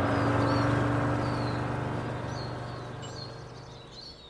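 A vehicle's low engine hum fading steadily as it drives off, with birds chirping several times.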